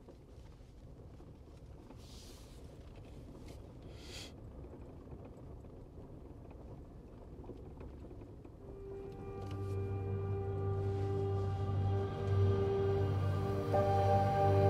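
Low, steady road rumble of a truck driving on a gravel road, heard from inside the cab, with two brief hissing noises early on. About two-thirds of the way through, slow ambient music with long held tones fades in and becomes the loudest sound.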